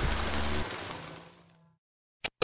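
Outro sound design: rain-like noise over a low, steady music drone, fading out about a second and a half in.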